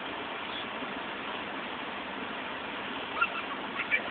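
Steady outdoor background hiss, with two or three short, high calls near the end.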